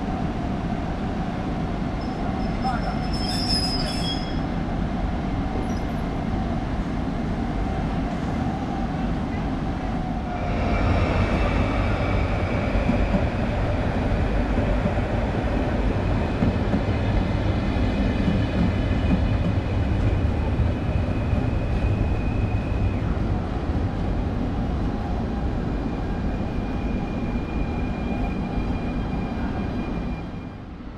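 A steady train hum with a held mid tone from a regional electric multiple unit at the platform. About ten seconds in a PKP Intercity passenger train comes in on the near track, louder, with a rumble and high wheel squeal that comes and goes as it slows to a stop.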